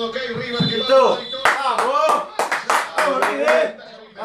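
Hand clapping: a quick run of about a dozen sharp claps through the second half, with men's voices over them.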